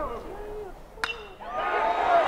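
Aluminum college baseball bat striking a pitched ball: a single sharp ping with a brief ring about a second in, the contact on a base hit.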